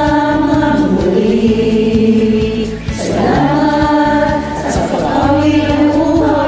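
A group of amateur singers singing together in chorus over a karaoke backing track with a steady drum beat, holding long notes. The singing breaks briefly just before three seconds in, then a new phrase begins.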